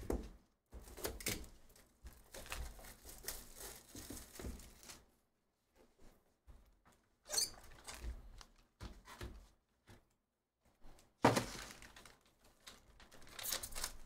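Hands opening a shrink-wrapped cardboard trading-card box: plastic wrap crinkling and tearing, with knocks of the cardboard box and lid on the table, coming in scattered bursts with two short pauses. Near the end the sealed pack wrapper is crinkled and peeled open.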